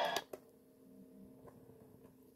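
Music from the portable DVD player cuts off abruptly right at the start. What follows is a faint steady hum and a few soft clicks from the player, spaced about a second apart.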